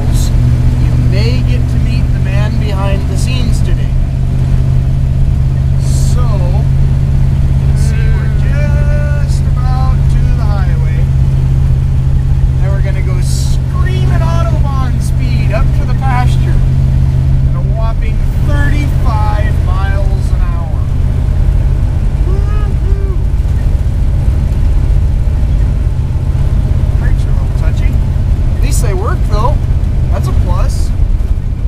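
1968 Chevy dump truck's engine running steadily while driving, heard inside the cab as a continuous low drone whose strongest hum drops away about eighteen seconds in. The truck is worn: the owner calls it very, very tired and says it burns a lot of oil.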